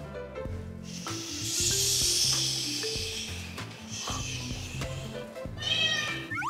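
Background music added in the edit, with a hissing noise in the middle and a short cartoon meow sound effect near the end.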